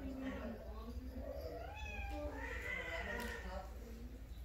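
Persian cat yowling in drawn-out meows, the calling of a female cat in heat. Shorter calls come first and run into one long wavering call in the second half.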